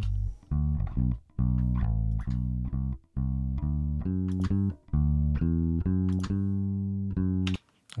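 Soloed bass guitar track, recorded direct, playing a line of plucked notes with short gaps between phrases. It stops shortly before the end.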